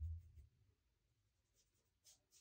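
Near silence: room tone, with a low rumble fading out in the first half-second.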